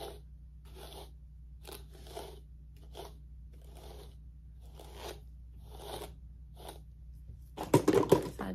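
A brush pulled again and again through long, tangled curly wig hair, with about a dozen short scratchy strokes spaced roughly half a second to a second apart. A louder cluster of knocks comes near the end.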